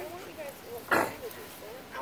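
Dogs play-wrestling, with one short, rough vocalisation from a dog about a second in, the loudest sound here. Voices carry on faintly in the background.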